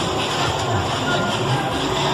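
A decorated party bus passing close, its engine rumble mixed with loud music with a pulsing bass from its own sound system and crowd noise, in one dense, steady wash of sound.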